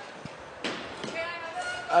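A single sharp knock from the bike polo play about two-thirds of a second in, with faint voices in the background.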